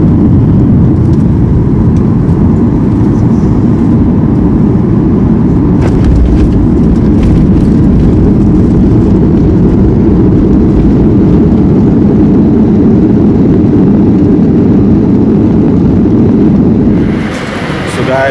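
Jet airliner on its landing rollout, heard from inside the cabin: a loud, steady rumble of the wheels on the runway and the engines. It drops off about a second before the end.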